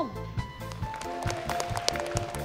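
Instrumental background music with a steady beat.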